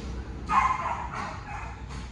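A French bulldog gives one short cry about half a second in, which fades out within a second.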